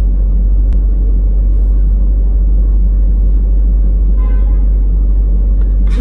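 Steady low rumble inside a parked car's cabin, with a single sharp click just under a second in.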